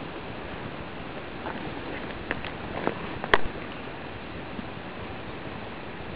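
Steady outdoor background noise with no distinct source, with a few soft clicks between about two and three and a half seconds in.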